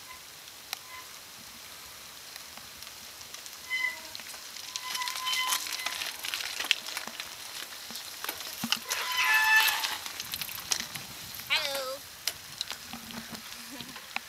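Bicycles rolling up on a wet road: tyres hiss on the wet tarmac, rising from about four seconds in as the riders arrive, with a few short high-pitched brake squeals as they slow to a stop. A brief voice calls out near the end.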